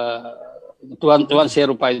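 A man's voice over a video-call link, hesitating mid-sentence: a drawn-out held syllable at the start, a short pause, then speech resuming about a second in.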